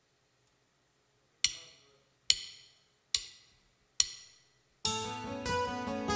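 Drumsticks clicked together four times at an even tempo, counting the band in, followed about five seconds in by the full rock band starting to play with guitars, bass, keyboards and drums.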